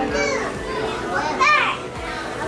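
Young children's excited high-pitched squeals and calls, the loudest about one and a half seconds in.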